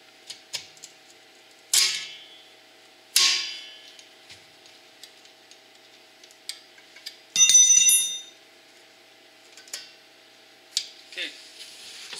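Steel drum-brake return springs and a brake spring tool being worked onto the shoes' anchor pin: two sharp metallic clanks, each ringing out briefly, then a longer bell-like metallic ring about midway, with small clicks of steel parts in between.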